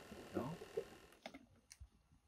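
A brief spoken word, then quiet with a few faint, short clicks in the second half.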